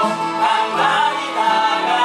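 A man singing a musical-theatre number through a stage microphone over instrumental accompaniment, his held notes gliding between pitches.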